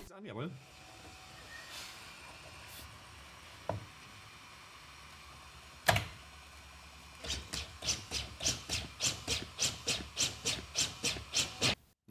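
A corpuls cpr mechanical chest compression device being fitted on a manikin, with a sharp click about halfway through. From about seven seconds in it runs compressions in a fast, even rhythm of mechanical strokes, set for a child at about 110 compressions a minute and a depth of 4.7 cm.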